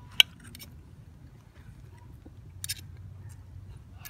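Knife and fork clinking and scraping against a ceramic plate while cutting food: one sharp clink just after the start, then a short scrape near the middle and a few faint ticks.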